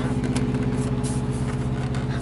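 Semi-truck diesel engine idling steadily, an even low hum.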